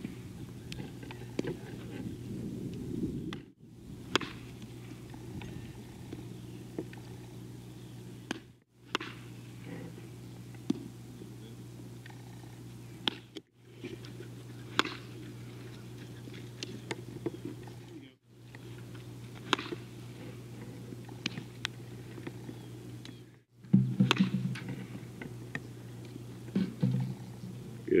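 Baseball infield practice: scattered sharp knocks of bat on ball and the ball smacking into a glove, over a steady low hum, broken by brief gaps every five seconds or so.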